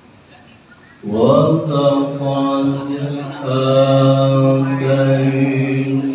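Melodious Quran recitation (tilawah) by a single voice, coming in about a second in and drawing out long, held notes.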